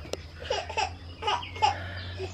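An infant babbling and giggling quietly in short, scattered sounds, with one sharp click just after the start.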